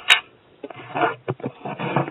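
A sharp click at the very start, then scraping and rubbing noises with faint low mumbling over the phone line.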